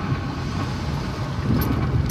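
Steady engine and road noise from inside a moving car's cabin, a low rumble with a constant hum. A couple of short clicks come near the end.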